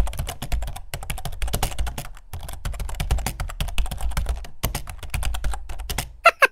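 Rapid computer-keyboard typing: a dense, uneven run of keystroke clicks, pausing briefly a few times.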